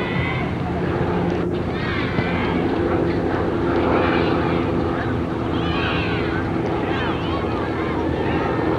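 A steady mechanical drone made of several held tones, with higher chirps and distant voices above it.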